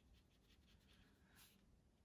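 Near silence, with the faint scratch of a watercolour brush stroking across paper.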